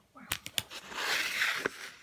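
Paper instruction booklet rustling as it is handled and moved, with a couple of light clicks about half a second in, then a longer rustle for about a second.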